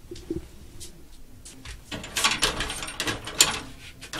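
A metal-framed glass window rattling, a quick run of sharp clicks and clatters through the second half.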